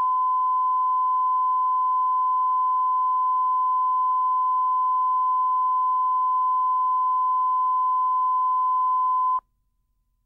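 Steady 1 kHz line-up reference tone played with SMPTE colour bars at the head of a videotape. It cuts off suddenly about a second before the end.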